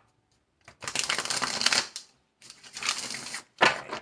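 A tarot deck being riffle-shuffled: two runs of rapid card flicks, each about a second long, then a shorter sharp burst of cards near the end.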